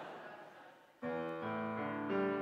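A grand piano starts playing about a second in with a sudden chord, then further notes and chords ringing on, after a second of fading background noise.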